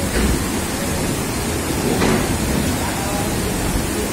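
Freight wagons rolling through floodwater over the tracks: a steady rushing and splashing of water churned up by the wheels over a low rumble.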